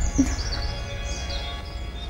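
Film background score, a low swell fading away under steady held tones, with a few high bird chirps in the first second or so.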